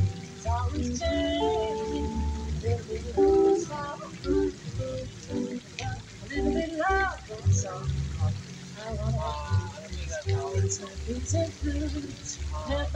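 Live small-band music: a woman singing into a microphone, with held and gliding notes, over electric guitar and plucked upright double bass.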